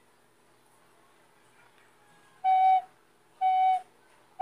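Plastic soprano recorder playing two short, clean F-sharp notes about a second apart, starting a little over two seconds in, each held about half a second. The holes are fully covered, so the note sounds steady without squeaking.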